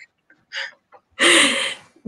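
A person's short, breathy burst of laughter, like a gasp of air, coming a little past the middle and lasting under a second. A faint breath comes just before it.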